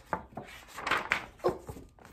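Pages of a large paper picture book being turned and handled: several quick paper rustles and flaps.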